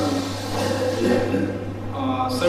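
Steady low electrical hum, with a few faint, hesitant voice sounds from the man during a pause in his answer.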